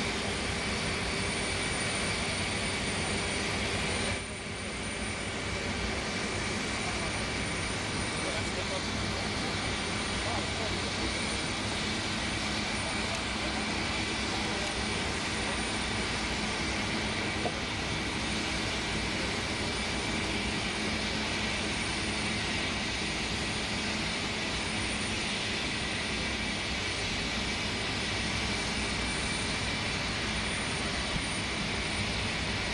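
Steady whining roar of a parked jet airliner's engines running, with a constant high whine over the rumble. It dips briefly about four seconds in.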